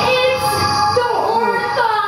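A performer's high-pitched, wordless vocalizing, with the pitch sliding up and down in curving glides.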